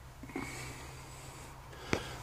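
New Holland T4.95 tractor's four-cylinder diesel engine idling, heard from inside the closed cab as a low steady hum. A short breath-like puff comes about a third of a second in, and a sharp click just before the end.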